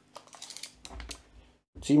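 A quick run of light, irregular clicks as a tape measure is pulled out and set against a plastic building-brick model.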